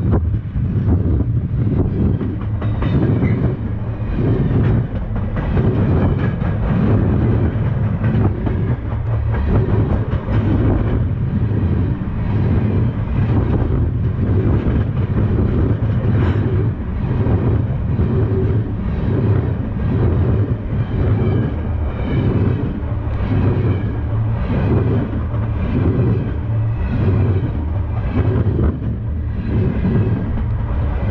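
Freight train cars rolling past at close range: steel wheels rumbling loudly on the rails, with a repeating clickety-clack as the wheel trucks pass over the rail joints.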